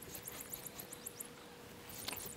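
Faint outdoor ambience: a high-pitched chirping trill, about ten chirps a second, that stops a little past halfway, over soft sounds of a Highland bull tearing grass as it grazes.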